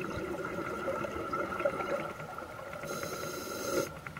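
Scuba diver breathing through a regulator underwater: a steady rush of breath and bubbles, with a higher hiss for about a second near the end.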